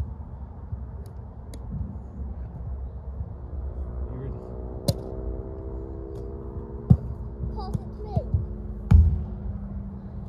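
A football being kicked up and juggled: a handful of sharp, hollow thuds of foot on ball in the second half, the loudest about a second before the end, over a steady low rumble.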